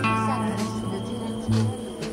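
Live rock trio playing: sustained electric guitar notes over bass guitar and drums, with a guitar note bending down just after the start.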